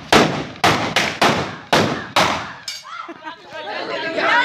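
A quick series of loud bangs from homemade metal pipe guns ('naal') fired as Diwali firecrackers, about seven blasts in under three seconds, each with a short fading tail. Voices are heard near the end.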